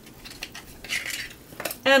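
Faint clicks and rustling as a boxed lip gloss is handled and taken out of its packaging, with small plastic-on-plastic clinks.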